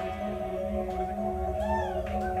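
A live rock band's loud playing cuts off, leaving a held amplified drone of several steady tones, with a whining pitched glide that rises and falls near the end.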